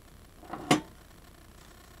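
Quiet room tone broken by a single short, sharp click about three-quarters of a second in.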